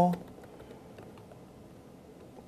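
Faint computer keyboard keystrokes: a few light, scattered clicks.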